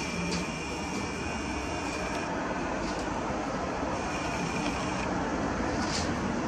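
Twin-turboprop airliner flying overhead: a steady engine and propeller drone. A thin high whine sits over it, dropping out about two seconds in and coming back about four seconds in.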